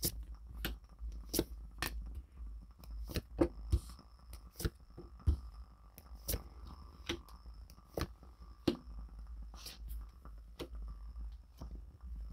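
Tarot cards being dealt one at a time onto a cloth-covered table: a string of short, irregular taps and card flicks, over a steady low hum.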